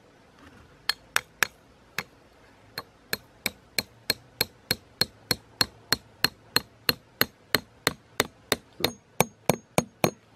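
Back of a small axe hammering a U-shaped steel wire pin into sandy ground, metal on metal with a short ring to each blow. A few spaced blows, then a steady run of about three taps a second.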